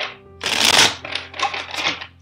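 A deck of tarot cards being riffle-shuffled by hand: a short snap at the start, then a long rushing riffle about half a second in, followed by three shorter riffles. Soft background music plays underneath.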